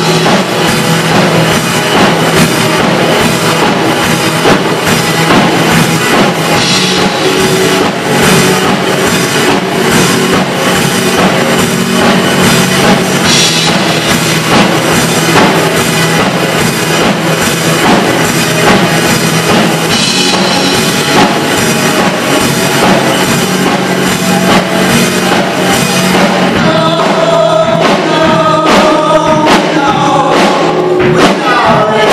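Live band music: a strummed acoustic guitar and singing over a steady beat, with sung harmonies coming forward near the end.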